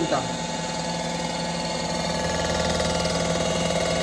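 Cylinder-head resurfacing machine running steadily, its cutter passing over the deck of a warped cylinder head, with a fine fast rhythm under a steady hum. The cutter is still working the last low spots of a head warped by overheating.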